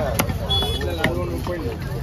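People talking, with one sharp knock near the start: a cleaver striking a wooden chopping block.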